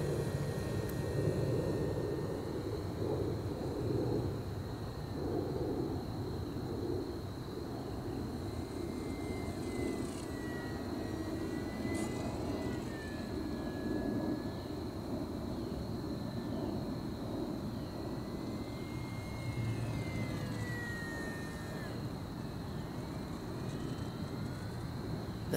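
Ultra-micro RC trainer plane (HobbyZone Apprentice STOL S) flying sport aerobatics: a faint electric-motor and propeller whine whose pitch rises and falls with throttle and passes, over a steady low rushing background.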